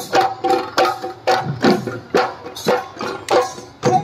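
Bihu dhol drums played with stick and hand in a driving rhythm: deep strokes about twice a second whose boom drops in pitch, with lighter strokes between, under short held higher notes.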